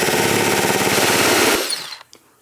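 Power drill-driver driving screws, running steadily with a rapid rattle and stopping about one and a half seconds in.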